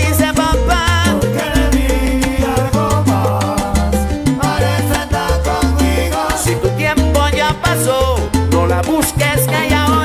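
A salsa romántica track playing: a bass line stepping between held notes under dense percussion, with wavering melodic lines above.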